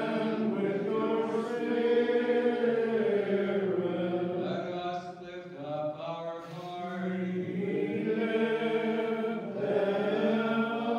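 Byzantine liturgical chant sung a cappella by several voices together, in long held phrases.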